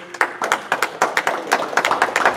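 Scattered hand claps from a few people in the congregation: quick, uneven claps, not a full round of applause.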